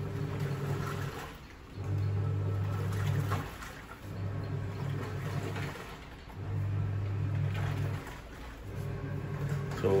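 Hisense WTAR8011G 8 kg top-loading washing machine agitating in its wash cycle: the motor hums in about five bursts of roughly a second and a half, with short pauses between as the pulsator reverses, over water sloshing in the tub. The machine runs stably.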